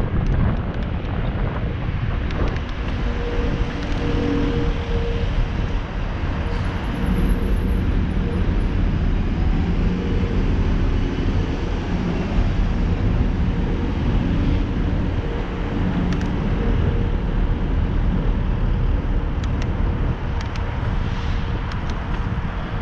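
Wind rushing over the camera microphone of a moving bicycle, a steady low rumble, with city traffic and engine hum beneath it.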